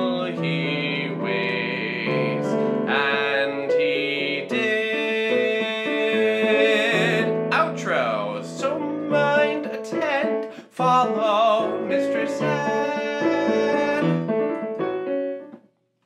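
A musical-theatre song with piano accompaniment and singers holding notes with vibrato: the B section of the song. The music stops just before the end.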